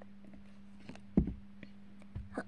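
Toy number blocks being handled and set down on carpet: one soft knock a little over a second in, with a few small clicks around it, over a steady low hum.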